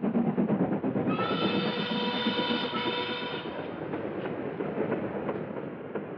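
A train running along the track with a rapid clatter. About a second in, its horn sounds one held note for a little over two seconds.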